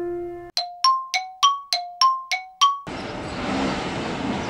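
A ringing metal bell chime struck eight times in quick succession, alternating between two notes, just after a piano piece ends. It is followed by steady outdoor street noise.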